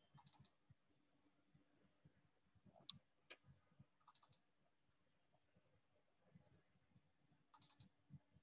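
Near silence broken by faint computer clicks that come in a few short clusters, the sharpest about three seconds in.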